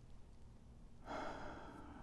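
A pipe smoker's breath: one long, noisy breath about a second in, trailing off after about a second.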